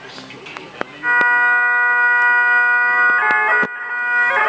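Highland bagpipe striking up about a second in: the drones and a held chanter note sound together, the chanter shifts notes, breaks off briefly near the end and comes back in. Faint voices can be heard before the pipes start.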